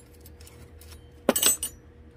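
Small metal potting tools, such as tweezers, clinking together in a short clatter just past the middle, with faint ticks of handling around it.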